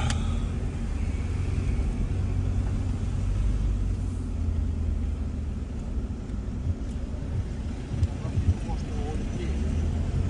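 Cabin noise inside a Toyota Hilux driving slowly through town: a steady low engine and road rumble.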